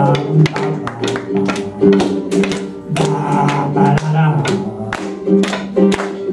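A live band playing an instrumental passage: guitar chords over a steady drum beat of about two to three strikes a second, with a wavering melody line near the start and again around three seconds in.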